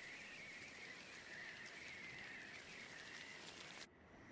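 Faint steady hiss with a thin, wavering high whistle running through it, from the anime episode's soundtrack played at low volume; it starts abruptly and cuts off suddenly just before the end.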